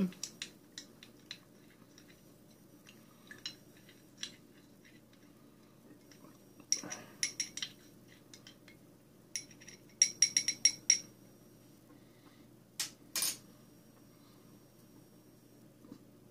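A small spoon stirring sweetener into a drink in a stemmed glass, clinking against the glass. The clinks come in two quick runs of light taps, about seven and ten seconds in, with scattered single ticks between and two sharper clinks near the end.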